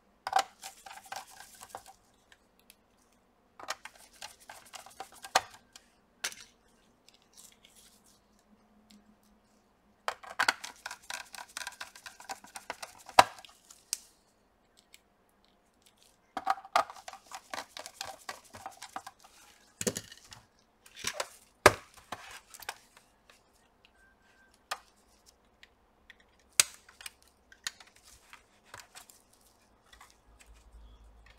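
Small hand screwdriver driving screws back into a laptop's plastic chassis, in four bursts of rapid clicking. Later come a few single sharp plastic clicks as the case is pressed together along its edge.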